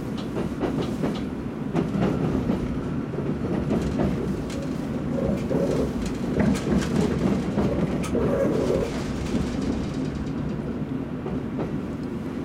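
Kintetsu limited express train running at speed, heard from inside the passenger car: a steady rumble with scattered irregular clicks of the wheels passing over rail joints.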